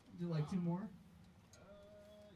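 A person's voice giving a drawn-out, wavering vocal sound lasting under a second, followed by a faint steady tone near the end.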